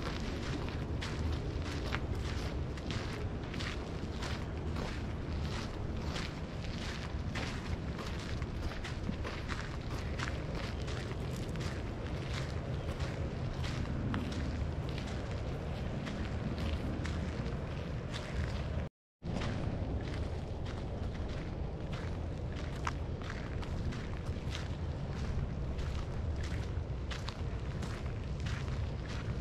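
Footsteps crunching on a gravel path at a steady walking pace, about two steps a second, over a steady low rumble of wind buffeting the microphone. The audio cuts out for a moment about two-thirds of the way through.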